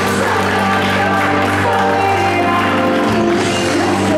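Music playing loudly with long held notes over a steady low bass note.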